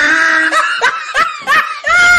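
Laughter: one held note, then a string of short, quick laughs.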